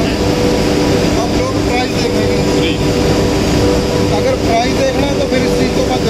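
Portable dust collector's electric motor and blower running with a steady hum, with several steady tones held throughout, under background chatter of voices.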